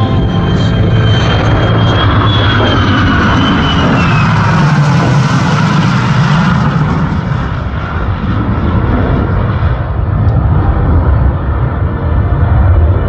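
An F-35A Lightning II jet and three P-51 Mustang piston-engine fighters passing in formation. There is a loud, steady rumble, and a jet whine that falls in pitch a few seconds in as the formation goes by.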